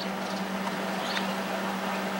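A steady low hum at one unchanging pitch over a hiss of background noise, with a couple of faint ticks; no distinct event.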